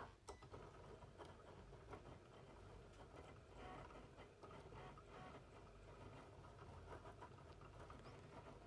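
Faint sound of a Cricut Explore Air 2 cutting machine at work, its motors moving the blade carriage over a sticker sheet, with a few light clicks in the first second.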